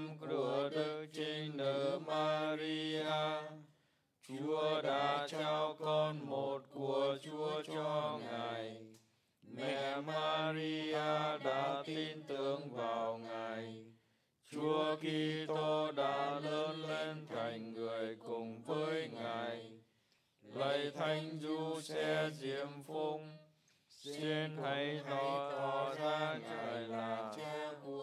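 A man's voice chanting a Vietnamese prayer on a near-level reciting tone, in phrases of about four to five seconds with short breaths between them.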